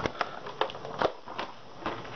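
Handling noise: about six sharp clicks and knocks, irregularly spaced.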